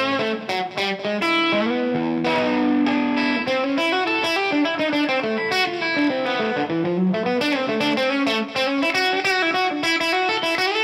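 Electric guitar played through an Origin Effects RevivalTREM overdrive pedal and a Cali76 compressor: quick country chicken-picking lead lines with a lightly driven tone. About a second and a half in, a string is bent up and the note is held for about two seconds before the fast picking resumes.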